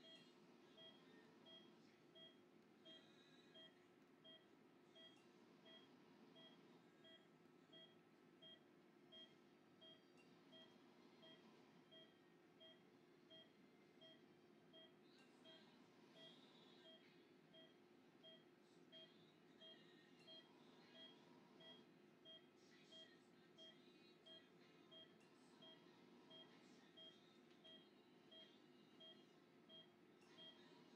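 Faint, evenly repeating beeps of an anaesthesia patient monitor, one short tone about every three-quarters of a second: the pulse tone that sounds with each of the anaesthetised dog's heartbeats. There is a low steady room hum under it and a few faint clicks of surgical instruments midway.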